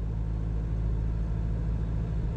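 A car's engine and tyres running at a steady road speed, heard from inside the cabin as a constant low drone.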